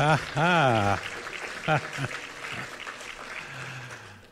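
A singing voice holds a last phrase that ends about a second in. Then an audience applauds, with a few voices mixed in.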